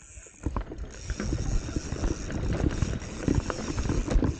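Commencal Meta HT hardtail mountain bike rolling down a rough, rocky dirt trail: tyres crunching over stones and the bike rattling with many small knocks. The sound is briefly quieter at the start, then the rattling builds about half a second in.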